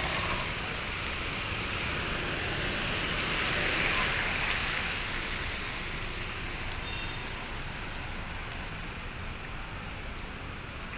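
Steady hiss of a wet street in the rain: rain and traffic on the wet road. A louder rush swells up about three and a half seconds in, then the noise eases off toward the end.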